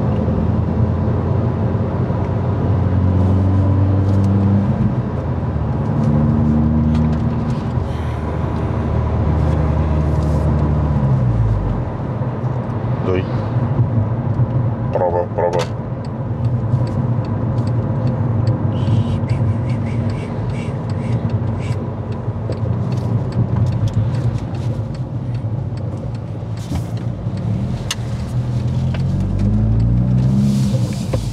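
Volkswagen Golf's engine and road noise heard from inside the cabin while driving. The engine drones under load for about the first eleven seconds, then drops away sharply as the driver lifts off, leaving steady tyre and road noise.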